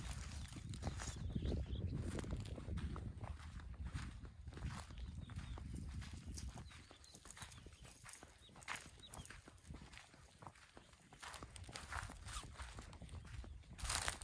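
Footsteps walking on a sandy dirt track through low plants, as irregular soft strokes. A low rumble lies under them, heaviest in the first half.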